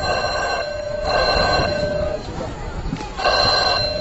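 A ringing, bell-like sound of several steady tones, repeating in pulses of about a second with short gaps between.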